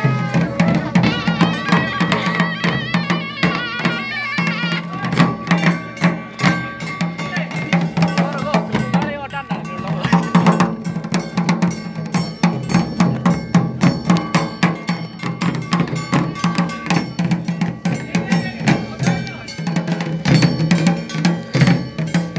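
Live traditional Himachali folk music for a devta procession: fast, driving drum beats with clanking metallic percussion over a steady low drone, and a wavering wind-instrument melody in the first few seconds.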